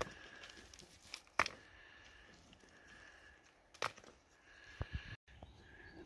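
Mostly quiet, with several faint clicks and knocks from rock samples being handled in gloved hands, and a brief dead-silent drop near the end.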